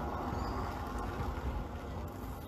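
Wind buffeting a wired earphone microphone outdoors: a low, uneven rumble with a faint hiss above it.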